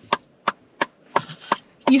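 Hand clapping inside a car: a short run of about seven separate claps.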